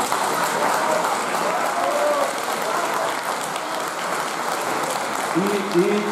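Audience applauding, a steady dense clapping, with a voice starting to speak over it near the end.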